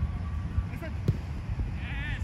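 Footballers' shouted calls across the pitch, with a loud drawn-out call rising and falling near the end, over a steady low rumble. A single thump comes about a second in.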